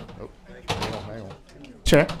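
Indistinct chatter and movement of people in a hearing room as a meeting breaks up, with a sharp knock on a microphone near the end.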